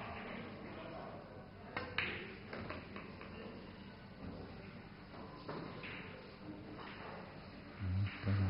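A pool shot: the cue tip strikes the cue ball about two seconds in, followed a split second later by a sharp click of cue ball on object ball, over the low murmur of a large hall. A few fainter clicks of balls follow.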